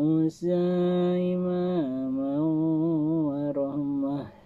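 A man chanting a Quran recitation in melodic tajwid style. A short opening syllable and a brief break are followed by a long held note of about a second and a half, then a lower line that wavers up and down.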